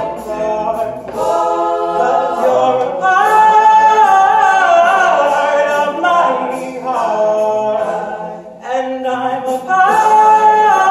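A male a cappella vocal group singing in close harmony, a lead voice over sustained chords from the group, with no instruments. It swells loudest in the middle and dips briefly near the end before coming back in.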